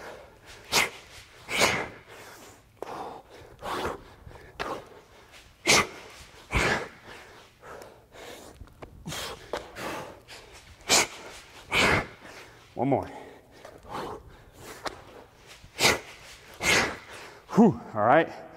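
A man breathing hard under exertion: sharp, forceful exhales about once a second, often in quick pairs, with quieter breaths between.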